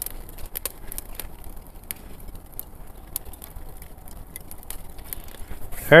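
Angus beef chuck (acém) searing fat side down on a hot charcoal grill: a steady sizzle with scattered crackling pops.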